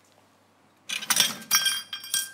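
Small ceramic bowl clinking as it is picked up and handled, a cluster of sharp clinks with a brief ringing tone, starting about a second in.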